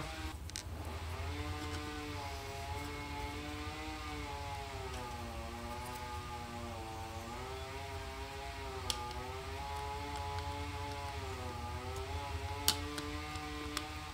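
A low hum under a droning tone of several pitches that slowly rises and falls throughout. A few sharp plastic clicks come about half a second in, near nine seconds and near thirteen seconds, as the two halves of an audio cassette shell are handled and pressed together.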